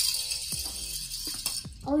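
Two die-cast toy cars rolling fast down an orange plastic race track and off onto a wooden floor: a rattly rolling noise that starts suddenly and fades after about a second and a half, with a few sharp clicks.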